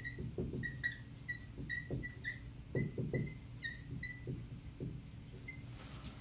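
Dry-erase marker writing on a whiteboard: a run of short high squeaks, about two a second, with softer rubbing strokes of the tip between them.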